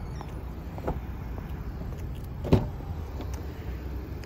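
A 2017 Honda CR-V's rear passenger door unlatching and opening: one sharp click about two and a half seconds in, with a fainter click about a second in, over a steady low rumble.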